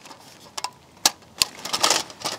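Thin titanium stove panels clicking and rattling as they are handled by hand, with three sharp clicks about half a second apart and a brief scrape near the end. The sheet metal is being worked back into shape after heat warping.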